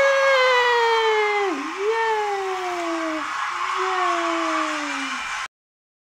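A person's voice giving three long, falling 'woooo' whoops of celebration over a steady hiss, cut off suddenly near the end.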